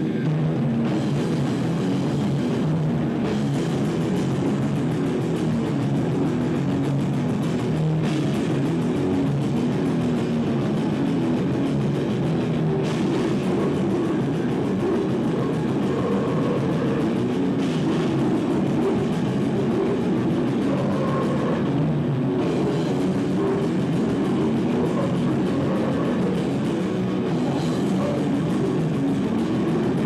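Live rock band playing loud, dense heavy rock: electric guitar and drum kit, with a singer at the microphone.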